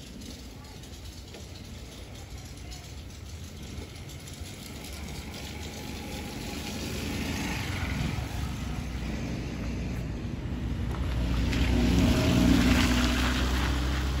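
A car engine drawing closer and growing louder, loudest about twelve seconds in as it passes, with tyres hissing through shallow water on the road.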